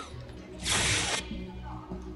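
Electronic soft-tip dartboard machine playing a short sound effect as the round ends: a burst of noise lasting about half a second, over a steady low hum.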